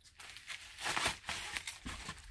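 Packaging rustling and crinkling in short, uneven bursts as flat white folding cardboard boxes are slid out of their wrapper.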